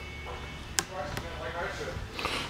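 A single sharp click just under a second in, from a hand on the 12-volt RV fridge's door handle and control strip, with faint voice after it.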